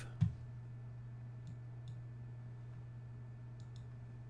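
A few faint computer mouse clicks, in two pairs about two seconds apart, over a steady low electrical hum, with a soft bump just after the start.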